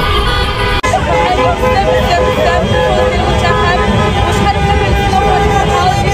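Street celebration: car horns held and honking over traffic rumble, with a crowd's voices mixed in. There is a brief break about a second in.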